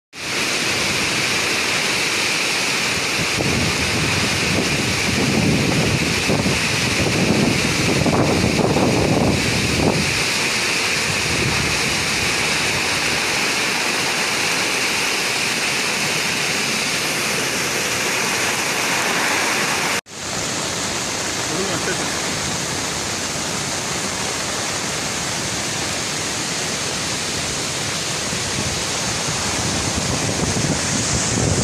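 Brown floodwater rushing and churning over a dam spillway: a loud, steady roar of turbulent water. The sound drops out for an instant about twenty seconds in, then carries on.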